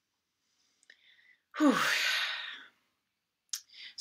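A person's breathy "whew" sigh: a long out-breath, with the voice falling in pitch, starting about a second and a half in. A short click follows near the end.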